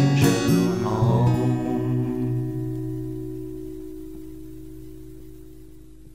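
Acoustic guitar playing a final strummed chord that rings on and slowly dies away, with the singer's last note trailing off in the first second or two.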